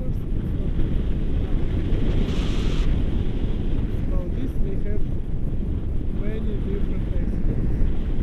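Airflow buffeting a handheld action camera's microphone in flight on a tandem paraglider: a loud, steady, rumbling wind rush. Faint snatches of voice come through it now and then.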